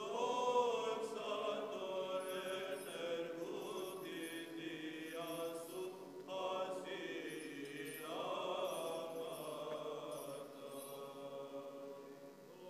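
Eastern Orthodox liturgical chant: voices singing long held notes that move slowly in pitch, in phrases with short breaks between them.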